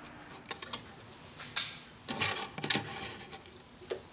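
Scattered clicks and scrapes of hand work on a wisteria's root ball and soil, with louder rustling scrapes about a second and a half in and again from about two to three seconds in.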